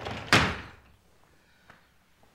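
Sliding glass patio door pushed shut along its track, ending in one loud bang as it hits the frame. A faint click follows about a second later.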